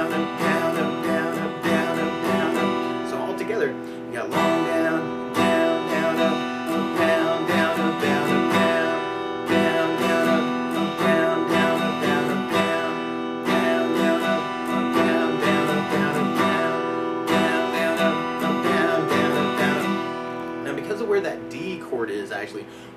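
Steel-string acoustic guitar strummed in a steady sixteenth-note down-up pattern on open E minor and D chords, the chord changing every few seconds.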